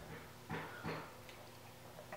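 Quiet room with two soft, short handling knocks, about half a second and about a second in, as a light PVC pipe frame sheeted in plastic wrap is set against the enclosure.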